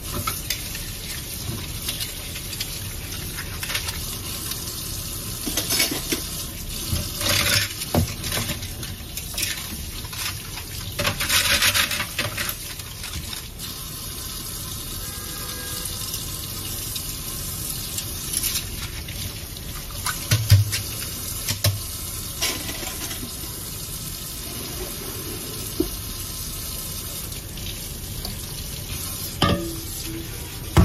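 Kitchen tap running steadily into a sink while things are washed by hand under the stream, with scattered clinks and knocks against the sink and a louder thump a little past the middle.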